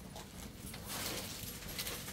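Faint rustling of cloth being handled, in short irregular swishes, over a low steady hum.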